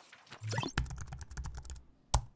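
Keyboard-typing sound effect: a quick run of key clicks as text is typed into a search bar, opening with a low thump about half a second in.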